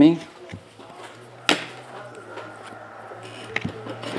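Trading cards handled and flipped through by hand, with one sharp click about a second and a half in and a few lighter clicks, over a low steady hum.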